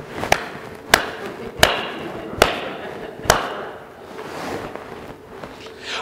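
Five sharp knocks at uneven intervals over the first three and a half seconds, then a quieter stretch.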